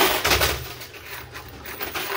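Quarters clattering and clinking in a coin pusher arcade machine, a sudden burst at the start easing into lighter scattered clinks.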